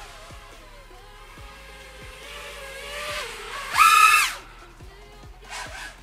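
HGLRC Rekon 5 five-inch FPV quadcopter's brushless motors whining in flight on a 6S battery, the pitch wavering with throttle. About four seconds in, a short, loud burst of throttle sends the whine up sharply and back down.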